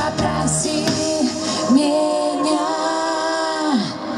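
A woman singing live over pop-rock band music. The bass drops out under a second in, and a long sung note is held until just before the end as the song winds down.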